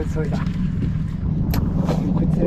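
A boat's motor running steadily, a low even hum, with two short sharp clicks near the end.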